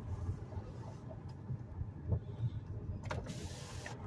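Steady low rumble of road and engine noise inside the cabin of a moving car, with a short burst of hiss a little after three seconds in.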